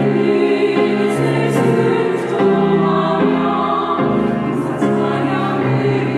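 Women's church choir singing a Korean hymn in long held notes.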